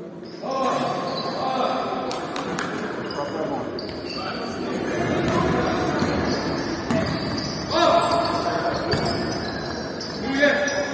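Basketball game in a large sports hall: a ball bouncing on the wooden court, with sharp knocks, and players and coaches shouting, loudest about half a second in and again near the end.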